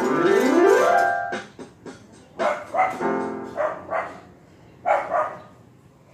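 Electronic keyboard finishing a fast run of notes sweeping down and up the keys, ending about a second in, then a dog barking: three pairs of quick barks.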